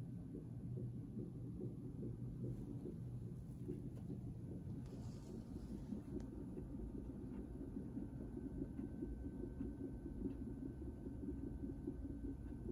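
Electronic fetal heart monitor's Doppler speaker playing the unborn baby's heartbeat as a faint, fast whooshing pulse.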